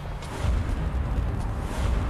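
A deep, steady low rumble that swells about half a second in.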